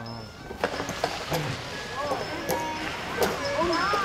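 Indistinct voices in the background over outdoor ambience, with a few scattered sharp clicks.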